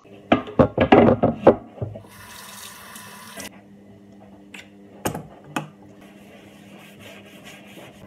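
Wooden cutting board and kitchen items clattering against a sink, then a kitchen tap running for about a second and a half. A couple more knocks follow, then a soapy sponge rubbing quickly on the wooden board.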